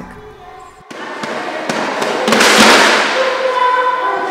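A group of children shaking and tapping homemade percussion instruments, decorated tin boxes and small shakers, in a dense rattle that builds about a second in and is loudest a little past the middle. Children's voices come in near the end.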